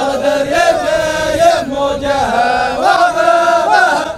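Men's group chant of the Dhofari habut (hbout), several male voices singing a line of verse in unison with long held notes that rise and fall together.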